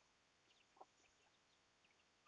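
Near silence, with a few faint, short chirps in the background.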